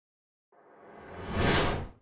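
Swelling whoosh sound effect of an animated logo intro, building from about half a second in to a peak, then dying away just before the end.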